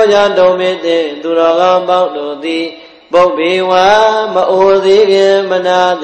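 A monk chanting a Buddhist recitation in a slow, melodic line of long held notes. It comes in two long phrases, with a brief breath between them about three seconds in.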